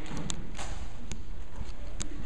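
Auditorium room noise: a steady low rumble with a few scattered light knocks and clicks.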